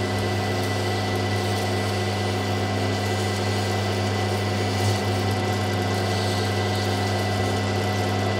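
Lapidary grinding machine running steadily with a low hum while an opal on a dop stick is held against its wet spinning wheel to grind a dome.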